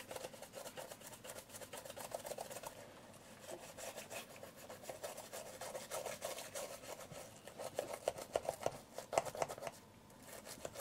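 Toothbrush bristles scrubbing the top plate of an old black film SLR camera body in rapid short back-and-forth strokes, louder near the end.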